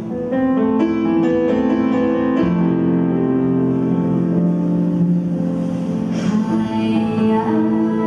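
Live band playing a slow ballad, with a run of struck piano chords that then ring on, and a woman's singing voice coming back in near the end.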